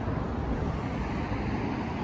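Steady low rumble of city street traffic.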